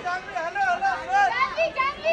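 High-pitched voices chattering and calling out in quick, rising and falling bursts, like children speaking excitedly.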